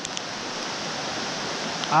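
Shallow rocky stream rushing over riffles and around boulders, a steady even wash of running water.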